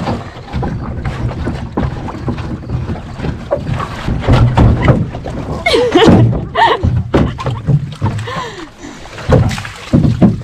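Wind rumbling on the microphone, with knocks and rustles of gear being handled and shifted in a canoe as a pack is unloaded. A few short vocal sounds come near the middle.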